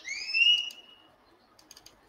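A single rising whistled note lasting under a second, then a few soft clicks near the end, like a computer mouse being clicked.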